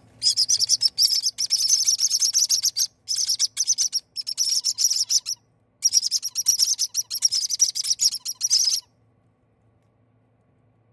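Baby parrot chicks calling in rapid strings of high chirps, in runs of one to two seconds with short pauses, falling silent about nine seconds in.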